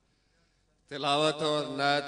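Near silence, then about a second in a man's voice through a microphone starts a loud, drawn-out chanted invocation with long held notes.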